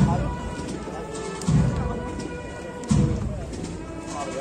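Processional band (agrupación musical) with deep bass drum beats about every second and a half under steady held notes, with crowd voices around.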